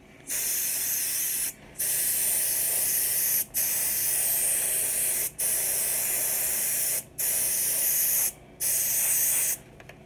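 A spray hissing in six bursts of one to two seconds each, with short breaks between them.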